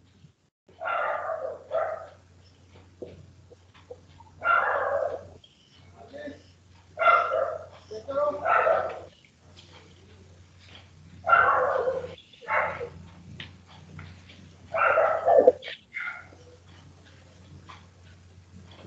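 A dog barking repeatedly, single barks and pairs every two or three seconds, over a low steady hum.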